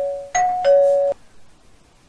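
Two-tone doorbell chime, a higher note then a lower one. The end of one ding-dong rings out, then a second full ding-dong sounds about a third of a second in and stops abruptly after about a second.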